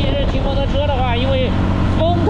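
A man talking over a motorcycle running steadily at road speed, with heavy wind noise on the microphone.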